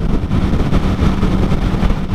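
Motorcycle cruising at freeway speed: a steady, loud rush of wind noise over the microphone with the engine's drone underneath.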